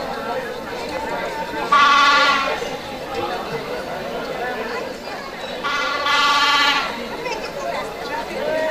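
A sheep bleating twice, each call about a second long, over the chatter of a crowd.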